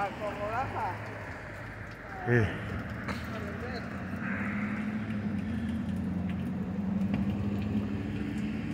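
Street ambience with a steady low engine hum from a motor vehicle nearby, growing slowly louder through the second half.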